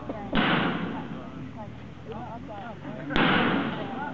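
Two sharp bangs about three seconds apart, each cutting in suddenly and fading with a short hiss, with people chatting between them.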